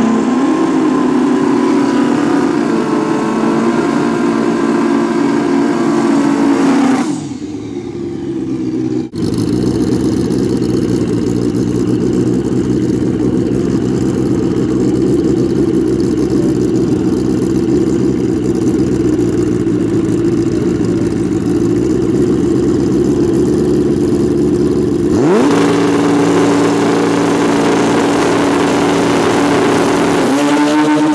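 Pro Street drag-racing motorcycle engines running at the start line, held at a steady rev. The sound dips about seven seconds in, settles to a lower steady note, then about twenty-five seconds in the revs climb quickly and are held higher, ready for the launch.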